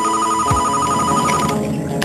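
Phone ringing with a fast warbling electronic trill, which cuts off about one and a half seconds in.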